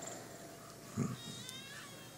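A man's short, soft chuckle close to the microphone about a second in, over faint room tone.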